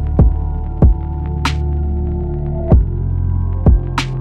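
Trapsoul-style R&B instrumental beat: deep 808 kicks that fall in pitch, four of them, with one sharp snare or clap hit about a second and a half in, over held bass notes and sustained synth chords.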